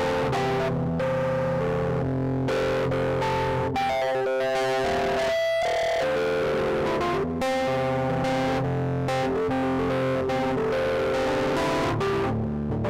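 Music played live on an electronic stage keyboard: sustained chords under a melody, with a quick run of notes about four seconds in.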